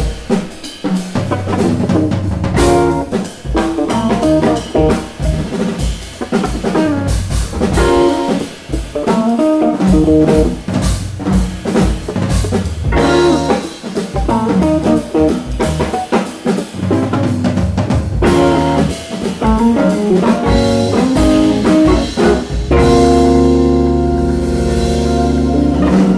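Live jazz-funk organ trio playing: organ, electric guitar and drum kit together, with the drums keeping a busy beat. Near the end the band settles onto a long held organ chord.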